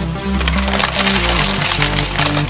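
Electronic music, and from about half a second in a dense clatter of many plastic LEGO bricks tumbling down and knocking against each other.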